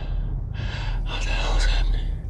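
A man's heavy, gasping breaths, two of them, the second longer, over a low rumble.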